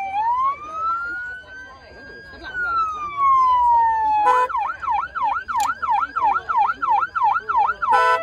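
A British Transport Police Kia EV6 GT's electronic siren sounding a slow wail, rising and then falling once, before switching about four seconds in to a fast yelp of about three sweeps a second.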